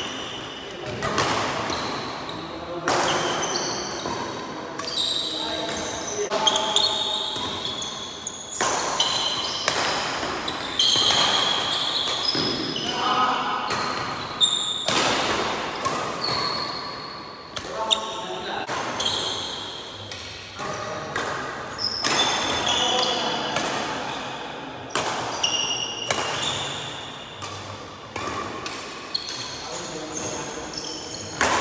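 A badminton rally: repeated sharp hits of rackets on the shuttlecock, a few each second, echoing in a hall. Court shoes squeak on the wooden floor between the hits.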